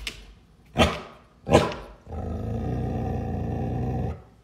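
A large shaggy dog gives two short barks about three-quarters of a second apart, then a steady low growl for the last two seconds.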